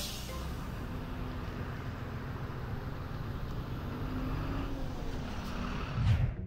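City bus diesel engine running at a stop, a steady low rumble whose engine note swells briefly a couple of times.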